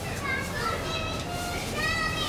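Several high-pitched voices, like children's, talking and calling over a steady low rumble.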